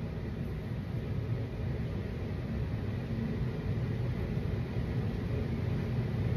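Steady low rumble of background noise with no distinct events.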